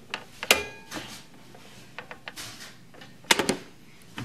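Sharp plastic clicks from a Pie Face game as its crank handle is turned, with a louder cluster of snaps a little past three seconds in.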